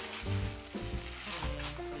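Clear plastic packaging crinkling and rustling as it is pulled off a wrapped gift, over a soft background melody.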